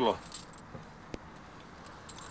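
Faint metallic jingling of the silver disc ornaments and chains on a Dalmatian folk-costume vest as the wearer moves, with a single sharp click about a second in.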